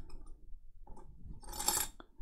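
Faint light clicks and a brief scrape from small tools being handled at the repair bench, ahead of removing the laptop's SSD.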